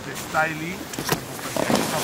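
A short vocal sound, then a sharp click just after a second in, followed by a rushing noise of wind on the microphone that grows louder near the end.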